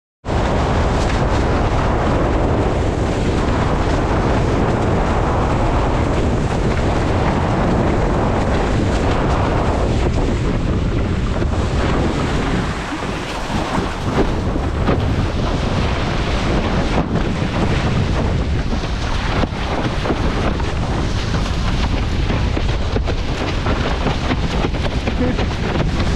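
Strong wind buffeting the microphone of a camera on a sailing windsurf rig, mixed with water rushing past the board on choppy water. The noise is steady and eases briefly about halfway through.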